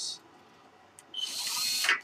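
Small DC gear motor running briefly, a short high whirring hiss that starts about a second in and stops just before the end.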